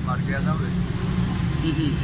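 An old man's voice speaking a few words, then pausing, over a steady low rumble.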